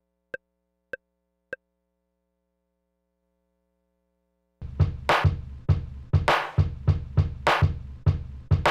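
Three short metronome clicks in the first second and a half, then a pause, then about halfway through an electronic drum pattern played from an Elektron Octatrack sampler starts, with a deep kick drum and bright noisy hits in a steady beat.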